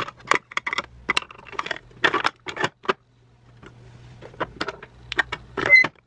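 Plastic makeup packaging clicking and clacking as products are handled and set into small organizer drawers: a quick, irregular run of light taps, with a short pause about three seconds in.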